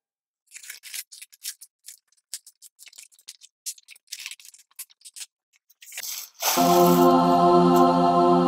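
Box cutter slitting packing tape and cardboard flaps being opened: a run of short, scattered scrapes and clicks. About six and a half seconds in, a louder steady chord of music comes in and holds.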